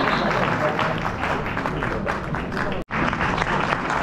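Audience applauding, a dense steady patter of many hands clapping, with voices mixed in. The sound cuts out for a split second about three quarters of the way through.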